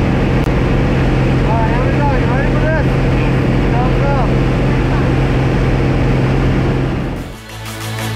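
Loud, steady drone of a small single-engine jump plane's engine and propeller, with wind rushing in at the open door. A voice calls out a few short times in the middle. Near the end the sound cuts away to electronic music.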